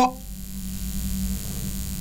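Steady low electrical hum with faint hiss from the sound system, typical of mains hum.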